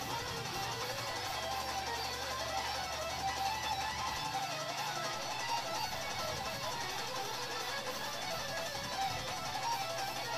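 Electric guitar playing a fast, technical death-metal solo over a backing track with low sustained bass.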